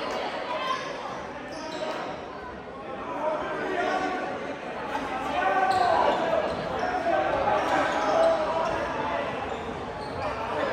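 Spectators talking among themselves in a large, echoing school gym, with a basketball bouncing on the hardwood court a few times.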